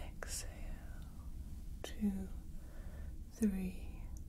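A soft whispering female voice with a few short, breathy voice sounds. Beneath it runs a steady low starship engine-rumble ambience.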